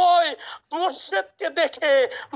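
Only speech: a man preaching a sermon in Bengali into a microphone, in quick continuous phrases with brief breaks.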